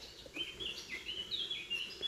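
A small bird singing a quick run of short, high chirping notes, several of them stepping down in pitch.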